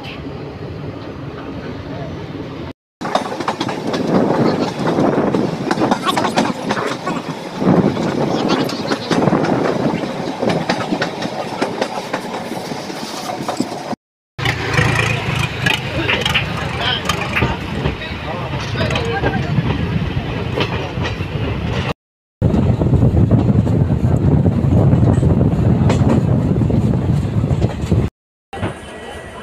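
Passenger train running along the track, heard from on board: a steady loud rumble and rattle of the wheels and carriages, cut off abruptly three times.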